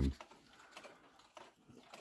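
Faint ticking of an Arthur Pequegnat Brandon drop-octagon pendulum wall clock, a few soft ticks heard in a quiet room.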